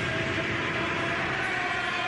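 Stadium crowd noise from a large football crowd, a steady dense wash of voices with some faint sung notes: home supporters celebrating a goal.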